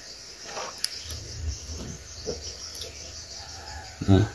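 Faint handling noise of alligator-clip test leads being fitted to a quartz clock movement's battery terminals, with a sharp click just under a second in and a few softer ticks, over a low steady hum.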